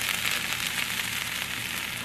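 Diced red onions with ginger and garlic frying in oil in a stainless steel sauté pan, a steady sizzle as the onions brown.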